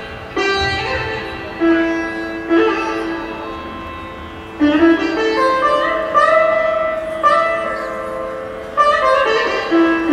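Instrumental opening of a Rajasthani folk song: a slow melody of single plucked notes, each sharply struck and left to ring and fade, about one note a second.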